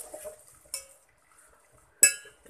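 A metal spoon stirring chopped shallots and garlic in oil in a rice cooker's inner pot, scraping and clinking against the pot, with one sharp clink a little under a second in. The stirring stops for the second half.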